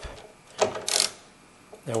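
A socket ratchet on a long extension working a car battery's cable clamp nut loose: two brief clicks of metal on metal, about a third of a second apart near the middle.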